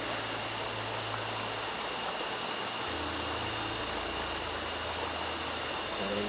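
Steady rush of a river's flowing water, with a continuous high trill of crickets singing over it.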